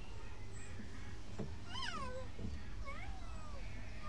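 Two high animal calls about a second apart, each sliding down in pitch, over a low steady rumble.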